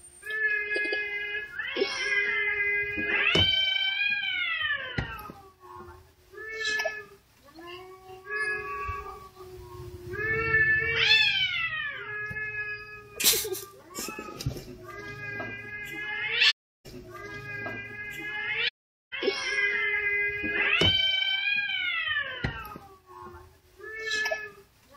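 Cats caterwauling: long, drawn-out yowls that rise and fall in pitch, repeated several times over. This is the loud courtship yowling of cats in heat, sung during a close face-off.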